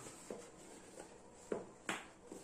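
Faint rustling of a nylon buoy cover being handled, with a few soft clicks and one sharper click near the end.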